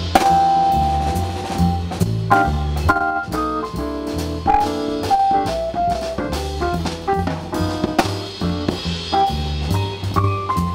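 A live jazz trio plays an instrumental passage: piano-voiced keyboard lines from a Korg X5D synthesizer over a bass line stepping note by note and a drum kit with cymbals.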